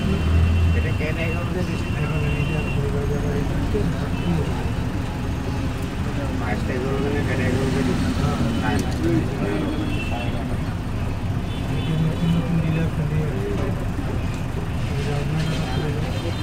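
Busy street traffic at close range: vehicle engines running in slow, congested traffic, with a steady low hum and people's voices mixed in.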